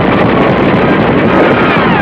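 Loud, steady roar of battle noise on a combat newsreel soundtrack, with a falling whistle near the end.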